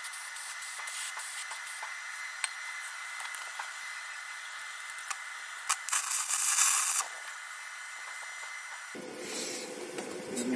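Aerosol can spraying onto a steel auger, a steady hiss with scattered small clicks. About six seconds in, a louder crackling burst of an inverter arc welder striking and running on the auger flight for about a second.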